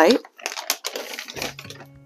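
Dry vermiculite being sprinkled and handled over a seed tray: a dense crackle of small quick clicks. Faint background music comes in about halfway through.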